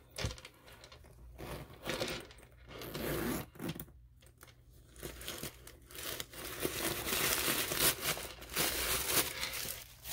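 A metal zipper on a leather camera bag being pulled open, then tissue-paper stuffing crinkling as it is pulled out of the bag, loudest in the last few seconds.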